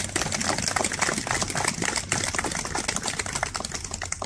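A crowd applauding: a dense, steady run of handclaps.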